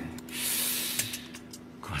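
A guitar's last note ringing on and dying away at the end of a song, with a breathy hiss lasting about a second near the start.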